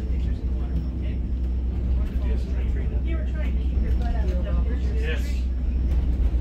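Steady low rumble of a White Pass railway passenger car running along the track, heard from inside the car, with indistinct voices of passengers talking over it.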